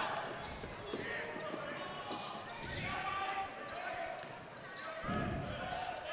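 A basketball being dribbled on a hardwood gym floor, with a low murmur of crowd voices in a large hall.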